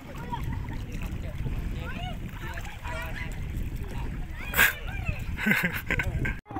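Children shouting and calling out while playing in shallow sea water, over a steady low rumble, with a couple of louder bursts near the end.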